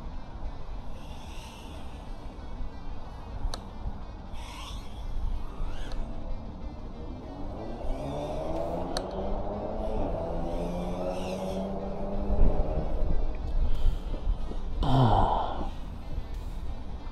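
Small 3-inch FPV quadcopter's motors whining, the pitch gliding up and down with throttle as it flies around, over a low rumble and faint background music.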